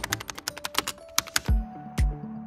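Computer keyboard typing sound effect: a quick run of clicks. About one and a half seconds in, background music with a low beat every half second comes in.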